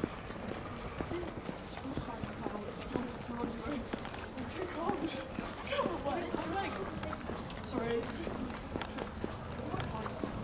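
Steady footsteps of someone walking on a tarmac street, with people's voices talking indistinctly in the background.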